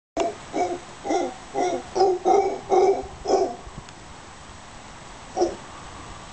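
Mantled howler monkey calling: a run of about eight short, low calls, a little over two a second, then a pause and a single further call near the end.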